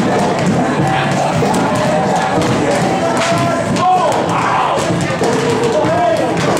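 Weighted balls thudding irregularly on concrete as a line of people slam them down and pick them up, over a crowd's voices and background music.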